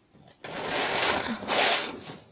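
Plastic paint scraper dragged across a painted canvas, spreading the paint in two scraping strokes, the second one shorter and brighter.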